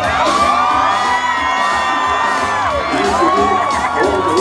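Loud dance music over a sound system, with a steady low bass pulse, mixed with a crowd cheering and shouting.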